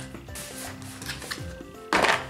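Background music, with light clicks and clatter of plastic lunch-box lids being handled; the loudest clack comes just before the end.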